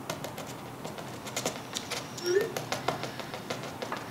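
Scattered light clicks and handling noises from small objects on a table, with a short low voice-like sound about two seconds in.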